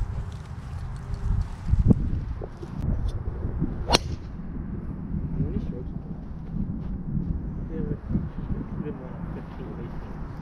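A golf club striking a teed ball once, a sharp crack about four seconds in, over steady wind rumble on the microphone. There is a dull thump about two seconds in.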